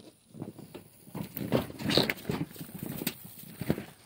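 Goats moving right by the microphone: a run of irregular knocks, clicks and scuffs starting a moment in, loudest about two seconds in.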